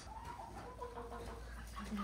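Chickens clucking: a few short, soft calls over a low steady rumble.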